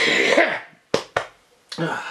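A woman's short, breathy vocal sound, then two sharp clicks close together about a second in.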